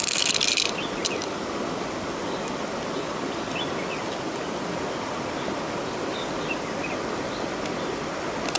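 Steady rush of shallow river water flowing around the spot, with a short bright clatter at the very start and a single click about a second in. A few faint high chirps come through the water noise.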